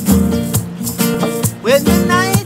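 Classical-style acoustic guitar strummed in a steady rhythm of chords with sharp percussive strokes. A man's singing voice comes in near the end.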